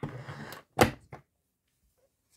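Stand mixer's whisk attachment being taken off: a brief rustle, then one sharp clunk a little under a second in, followed by a couple of light clicks.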